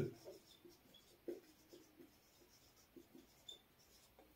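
Faint squeaks and short strokes of a marker pen writing on a whiteboard.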